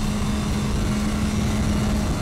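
BMW S1000RR's inline-four engine running at a steady pitch while the bike is held through a corner, under wind noise on the microphone.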